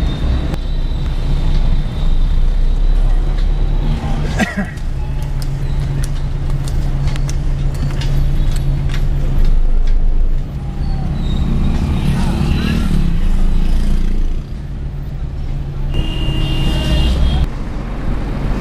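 Steady engine hum and road noise of a car driving along a busy road, heard from inside the vehicle, with traffic passing. A vehicle horn sounds for about a second and a half near the end.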